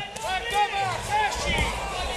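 Shouted calls from the corner at a boxing bout: a trainer yelling urgent instructions to his fighter, with crowd voices around the ring.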